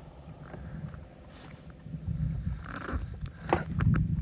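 Wind buffeting a handheld phone microphone, an uneven low rumble, with a few sharp clicks and knocks of handling near the end.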